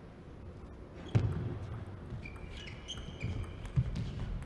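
Table tennis ball being struck and bouncing on the table during a doubles rally: a sharp click about a second in, lighter taps after it, and another crisp hit near the end.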